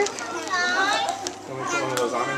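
Young children's voices, talking and calling out over one another.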